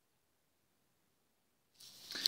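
Near silence: room tone, with a faint rustle beginning just before the end.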